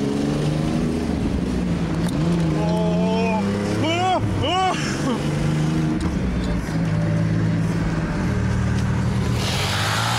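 Road traffic engines, the car's and the motorcycle's, running under acceleration, heard from inside the car's cabin. Between about two and five seconds in, a few short high squeals rise and fall. Near the end a rush of wind and road noise builds.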